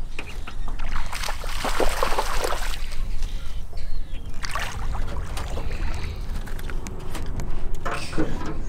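Wind rumbling on the microphone from a boat on the water, with noisy splashing bursts about a second in and again near the middle as a small hooked bass is reeled to the boat.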